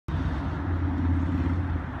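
Steady low rumble of a motor vehicle engine running.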